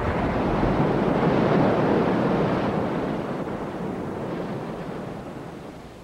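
Rushing flood-water sound effect: a sudden loud surge of noise that swells over the first couple of seconds, then slowly dies away.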